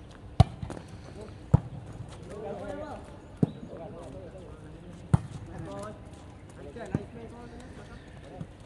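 A volleyball being struck in a rally, from the serve onward: five sharp slaps of hands and arms on the ball, a second or two apart, with players calling out between the hits.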